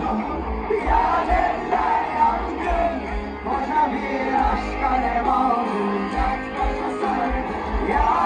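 Live rock band playing on a festival stage, with singing over heavy bass, heard from within a cheering crowd.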